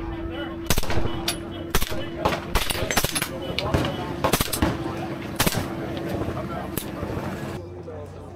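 Irregular single rifle shots, about a dozen sharp cracks, from a PTR rifle fitted with a suppressor and from other guns on the firing line, over a steady low hum that stops shortly before the end.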